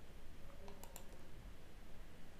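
A few faint, quick clicks from the presenter's computer mouse and keyboard, bunched together about half a second in, over low room hiss.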